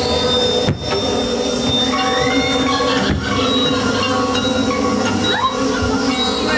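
Loud haunted-maze sound effects: a steady metallic, machine-like drone, with a rising screech about two seconds in and another near the end.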